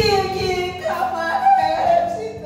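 A woman singing solo into a microphone: a phrase that slides down in pitch, then a higher note held for about a second.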